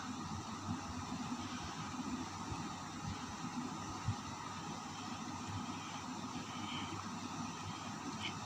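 Steady background hiss of room noise, with a few faint ticks, the sharpest about four seconds in.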